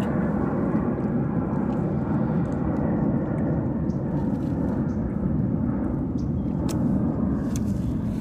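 Steady rumble of distant engine noise with no speech, fairly even throughout and swelling slightly near the end, with a few faint clicks in the second half.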